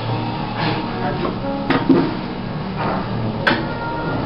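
Restaurant dining-room noise: background music and indistinct talk at the tables, with two sharp knocks, about a second and a half apart, near the middle and later on.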